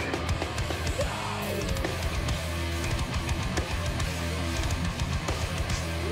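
Metal band playing live: heavy distorted electric guitar and bass over a drum kit, loud and unbroken.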